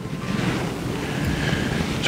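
A steady rush of wind and waves on the shore, swelling over the first second and then holding.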